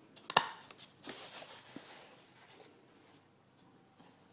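A knife's grey presentation box being handled: a few light clicks and one sharp knock early on, then a short scraping rustle a little after a second in that fades away.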